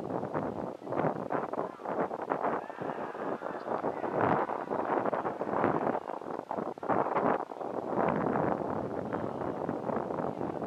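Wind gusting across the camera microphone, a rough, uneven rushing that swells and fades several times.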